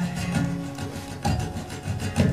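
Acoustic guitar music: held notes under a run of scratchy, rubbing percussive strokes.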